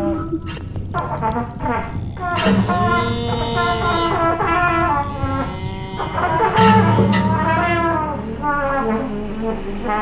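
Free-jazz improvisation: a trumpet plays bending, wavering lines over sustained low notes, cut by sharp percussive hits near the start, about two and a half seconds in and about six and a half seconds in.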